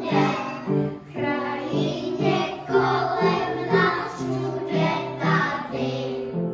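A group of young children singing a song together, accompanied by an upright piano played in a regular, stepping rhythm.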